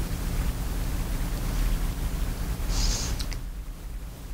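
Steady background hiss with a low hum. A brief high scratchy sound and two or three small clicks come about three seconds in, after which the hiss and hum drop noticeably.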